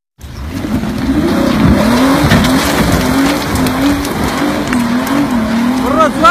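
Off-road 4x4's engine revving hard under load as it climbs a steep dirt hill, its pitch rising and falling over a steady noisy rush. The sound cuts in suddenly just after the start.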